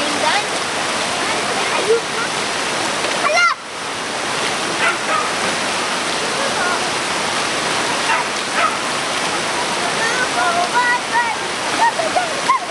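Rushing floodwater of a swollen brown river in spate, a loud, steady, dense rush that dips briefly about three and a half seconds in.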